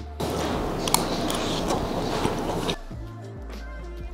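A dense crackling noise with a few sharp clicks lasts about two and a half seconds and stops abruptly, over background music. It gives way to the music bed alone.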